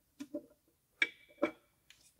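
A handful of sharp metal knocks and clicks as a detonation-damaged piston and its connecting rod are worked out of the engine block's cylinder. One clink about halfway through rings briefly.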